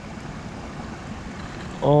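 Steady, even hiss of a shallow creek running over gravel. A man's voice breaks in near the end.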